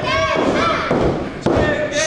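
A thud on the wrestling ring mat about one and a half seconds in as a wrestler's body comes down on it, over shouting voices.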